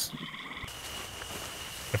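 Outdoor dusk ambience: frogs calling, with a steady high trill setting in under a second in.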